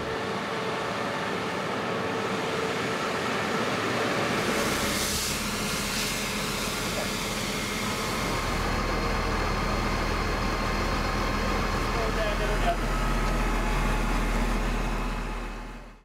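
Diesel truck engines running with water jets spraying hard onto the pavement during street disinfection, a deeper low rumble setting in about halfway through.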